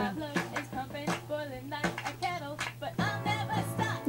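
Recorded rock song playing back: a woman singing the verse over the band, with sharp hand-clap strokes among the notes.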